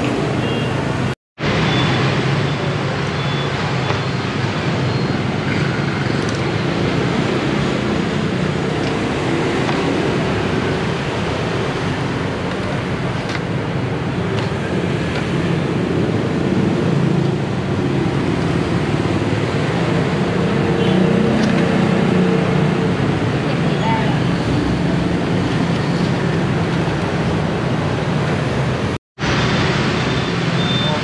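Steady road traffic noise with indistinct background voices. It cuts out completely for a moment twice, about a second in and near the end.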